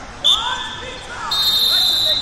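Referee's whistle blowing to start a wrestling bout: a short blast just after the start, then a longer, louder blast from a little past halfway. Voices shout underneath.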